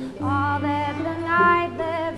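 A woman singing with a string quartet accompanying her. A long, steady low string note holds under the melody.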